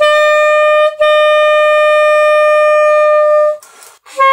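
Alto saxophone holding one long, steady note, re-tongued once about a second in. The note stops shortly before the end, leaving a faint breathy hiss in the gap.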